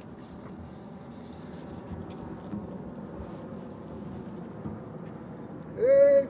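Steady outdoor street ambience with a low hum of traffic. Near the end, a loud, drawn-out drill command, "Halt", is shouted to a marching color guard.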